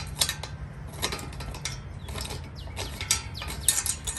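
Stainless steel bolt being unscrewed by hand from a gate lock's metal case, its threads giving irregular metallic clicks and scrapes as it turns out.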